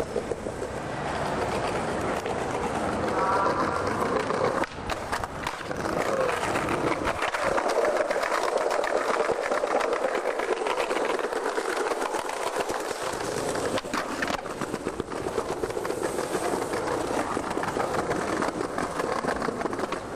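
Skateboard wheels rolling over a concrete sidewalk in a steady, continuous rumble, with a few sharp clacks of the board.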